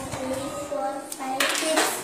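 Low murmur of children's voices in a classroom, with a couple of light taps and a short hissing noise about a second and a half in.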